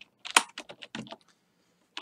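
Typing on a computer keyboard: a quick run of separate key clicks over about the first second, a pause, then keystrokes starting again near the end.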